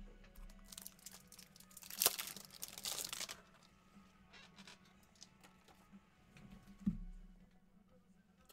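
Plastic trading-card packaging crinkling as it is handled for about two and a half seconds, with a sharp click in the middle and a soft thump near the end.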